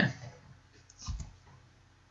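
A short cluster of soft computer clicks about a second in, advancing the presentation slide.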